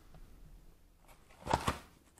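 Cardboard box of paper-wrapped cone fountains handled on a wooden tabletop: two quick knocks with a rustle about one and a half seconds in, otherwise quiet.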